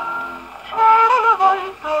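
A 1951 78 rpm shellac record of a woman singing a moderate-tempo song with orchestra, played on a His Master's Voice portable wind-up gramophone. A held note dies away, and after a short lull a new melodic phrase with vibrato begins about 0.7 seconds in.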